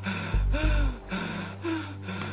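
A man gasping and crying out in pain while being whipped, in short rising-and-falling cries, over a film score's low sustained drone.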